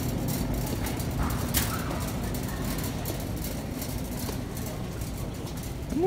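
Shopping cart rolling over a concrete warehouse-store floor: a steady low rumble with a few light rattles and clicks.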